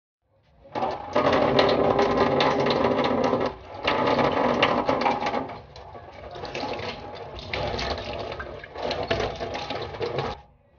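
Tap water running into a stainless steel sink and splashing over hands being washed. It starts about half a second in and is loudest for the first five seconds, with a brief dip partway, then turns quieter and more uneven as the hands move through the stream.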